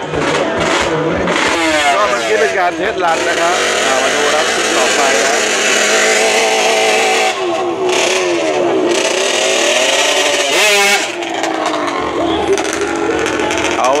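Drag-racing underbone motorcycle engine revving hard at the start line, its pitch sweeping up and falling back several times and held high for a few seconds in between.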